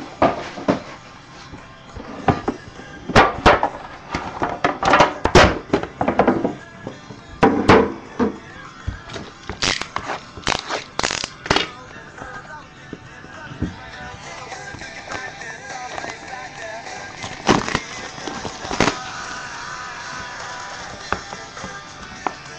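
Cardboard trading-card boxes and their shrink-wrap being handled: a string of sharp clicks, knocks and crinkles, busiest in the first half. Background music plays underneath.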